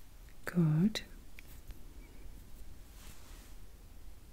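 A woman's soft voice gives one short hummed syllable, dipping then rising in pitch, about half a second in. After it come faint handling noises and a couple of light ticks as wooden matches are picked up and held up.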